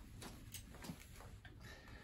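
Near silence with a few faint ticks and creaks from bolt cutters held under full pressure on a plastic-sleeved 6 mm chain, the jaws springing on the plastic rather than cutting.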